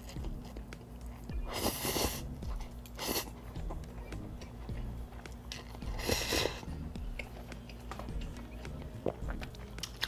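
A person slurping glass noodles (sotanghon) off a fork and chewing, with two long slurps about two seconds and six seconds in and a shorter one near three seconds.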